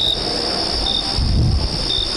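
Crickets chirping: a steady high trill with a short, sharper chirp about once a second.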